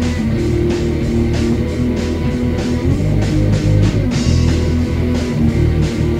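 Instrumental stretch of a metal-leaning hardcore rock song: electric guitar and bass playing over a steady beat, with no vocals.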